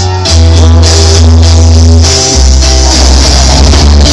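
Live rock band playing loud: drum kit with cymbals crashing, electric guitar and held bass notes, the bass dropping to a lower note about two seconds in.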